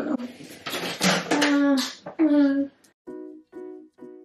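A woman's voice with no clear words for the first couple of seconds, then plucked-string background music starts, repeating notes about twice a second.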